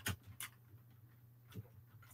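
A few short sips through a straw from a shake: two brief slurping clicks in the first half-second and another a little past the middle, over a faint low hum.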